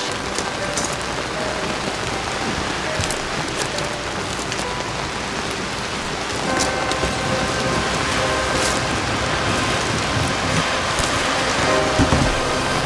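Steady heavy rain falling, with scattered faint taps of drops through it.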